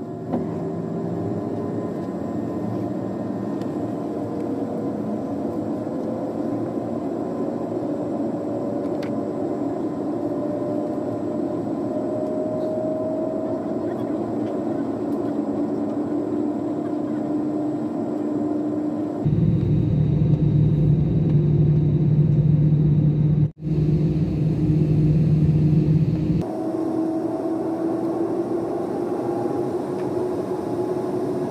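Jet airliner's engines heard from inside the cabin as it taxis: a steady rush with a whine that rises slowly in pitch. About two-thirds through, a louder, deeper rumble takes over for several seconds, broken by a brief dropout, then the steadier rush returns.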